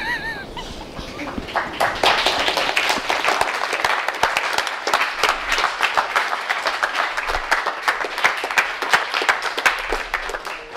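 A brief laugh, then an audience applauding, building up over the first two seconds into steady clapping.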